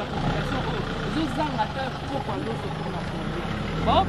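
A motor vehicle's engine idling steadily under people talking.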